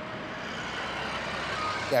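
A steady rushing noise that grows gradually louder, cut off just before the end when a man starts speaking.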